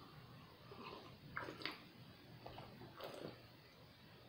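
Faint mouth sounds of a man sipping and swallowing cider from a glass: a few short soft clicks and gulps spread across a few seconds, over quiet room tone.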